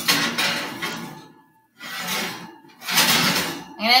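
Metal kitchenware clattering in three noisy bursts: a pan or tray being handled at the oven during broiling.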